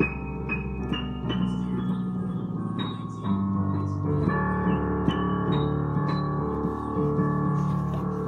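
Digital piano being played: sustained chords underneath, with short high notes picked out near the top of the keyboard that climb in pitch over the first second or so. The chords change about three seconds in and again about a second later.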